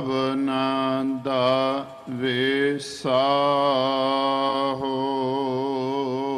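A male voice sings a Gurbani hymn (Sikh kirtan) in short melodic phrases, then draws out one long wavering note through the second half.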